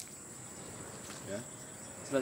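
Insects trilling steadily at a high pitch in the background, with a man's short spoken "ya" about halfway through.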